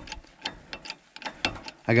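Hydraulic bottle jack being pumped by its handle to lift an RV frame: a string of sharp metallic clicks, about two a second, from the handle and pump on each stroke.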